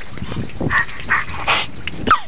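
A man whimpering and gasping in about three short, sharp breaths, the shock of cold water after a dip.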